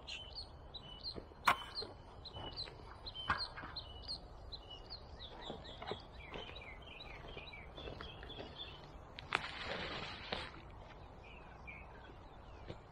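Small birds chirping over and over in short high calls, with a sharp knock about a second and a half in and a few lighter clicks as the PVC pipe frame is handled. About ten seconds in comes a brief rustle of boots in wood-chip mulch.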